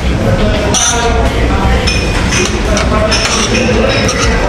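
Metal fork clinking and scraping against a steel paella pan while food is scooped from it.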